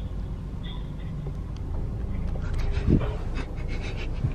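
Steady low rumble inside a car cabin with the engine idling. From about two seconds in comes a quick run of short, breathy puffs.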